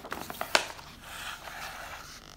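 A page of a paperback picture book being turned by hand: crackling paper with a sharp slap about half a second in as the page comes over, then a softer rustle of paper and hands as the book is laid flat.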